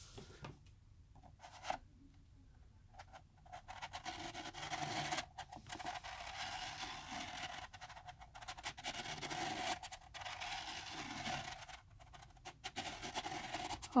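Pencil lead scratching on paper as a plastic spiral-art gear wheel is rolled around inside its toothed ring, drawing a spirograph pattern. The scratching is faint, starts about three seconds in, runs with brief pauses and stops near the end, after a few light clicks at the start.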